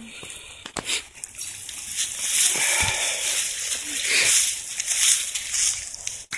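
Rustling and scuffing in dry pine straw, leaves and loose dirt as a small box is handled and lowered into a hole, with a couple of sharp clicks about a second in and a low thump near three seconds.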